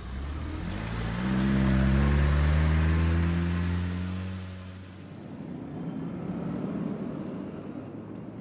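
A car pulling away, its engine rising in pitch as it accelerates, loudest in the first few seconds and fading out about halfway through.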